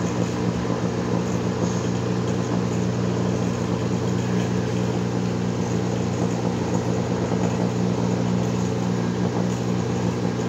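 Homemade vacuum-tube Tesla coil (an 813 pentode driving a Hartley oscillator) and its mains power supply running, making a steady low buzz with a hissing discharge arcing from the top of the coil.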